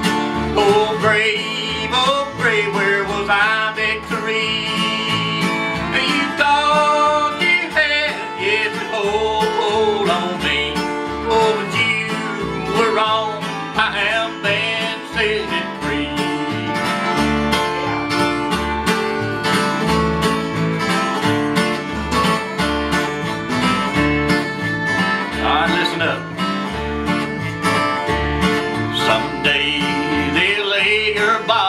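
Bluegrass gospel instrumental break: a fiddle plays the sliding melody over strummed acoustic guitars and a bass fiddle keeping a steady beat.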